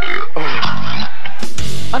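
A man belching loudly into a stage microphone, two long rough belches, the second the loudest.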